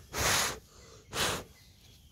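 Two short breaths close to the microphone, one just after the start and a shorter one about a second in.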